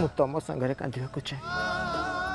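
A man speaking in a wavering, emotional voice over background music. A sustained music chord drops out as he begins and returns about three-quarters of the way through.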